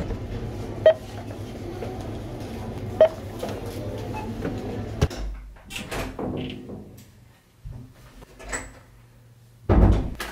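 Two short beeps from a supermarket self-checkout scanner, about two seconds apart, over steady store background noise. After about five seconds this gives way to a quieter room with scattered handling noises and a loud low thump near the end as a door is opened.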